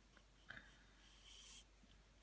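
Near silence: room tone, with a faint brief hiss about one and a half seconds in.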